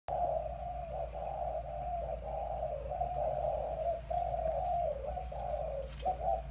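Doves cooing almost without pause, several coos overlapping, with only brief breaks, over a steady low background rumble.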